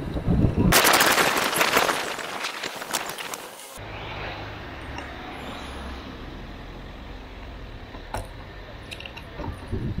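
Wind buffeting and rattle on a bicycle-mounted camera while riding: a loud crackling burst of rapid clicks for about three seconds that cuts off suddenly. It is followed by steadier, quieter road noise with a low rumble and a few single clicks.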